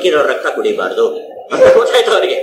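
A man lecturing in Kannada, his voice heard through a microphone.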